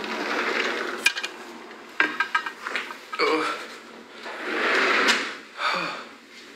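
A door being opened and shut while walking in from outside: a click, then a sharp knock with a short rattle about two seconds in, followed by a swelling rush of noise.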